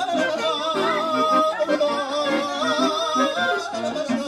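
A man singing live into a microphone, an ornamented melody with strong, wavering vibrato, over a pulsing accordion accompaniment.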